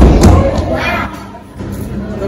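A loud thump right at the start, followed by about half a second of low rumbling handling noise as the handheld phone camera is knocked and brushed against clothing.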